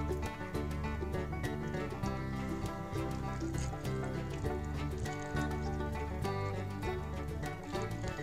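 Background music: a light tune with a steady beat and bass line.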